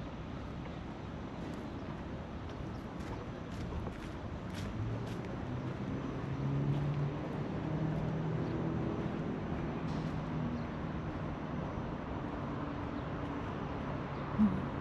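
Road traffic: a motor vehicle passing on the adjacent road, its low engine hum swelling from about halfway through and easing off near the end, over a steady outdoor noise bed.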